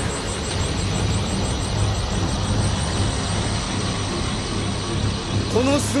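Anime sound effect: a steady, low rumbling roar of energy with music underneath, following a blast. A man's voice starts speaking near the end.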